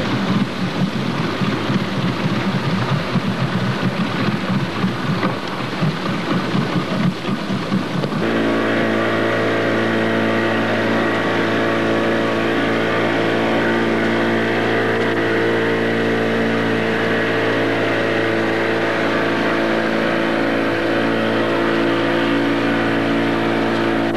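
Boat engine running. For about the first eight seconds the sound is rough and uneven; then it changes abruptly to a steady, even drone.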